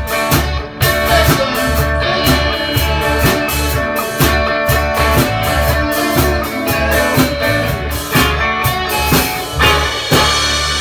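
Blues played on an electric guitar over a steady drum beat and a low bass line.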